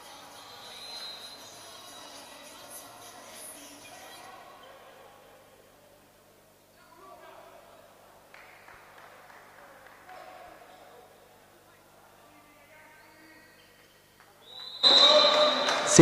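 Faint sports-hall ambience of crowd chatter with some background music, dropping quieter partway through. Near the end a sudden, much louder sound starts with a steady high tone.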